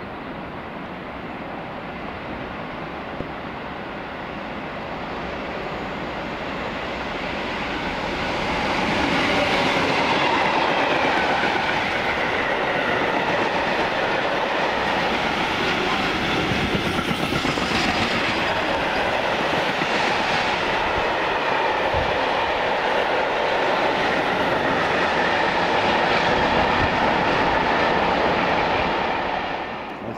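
A diesel-hauled freight train, a Class 66 locomotive with a long rake of covered wagons, approaching and passing close by. The sound builds over several seconds into a loud steady rumble of wagon wheels clacking over the rail joints, which ends abruptly near the end.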